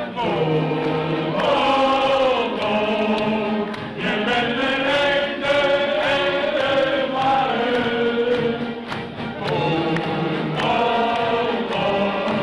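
Live wind band music with many voices singing along to a steady beat.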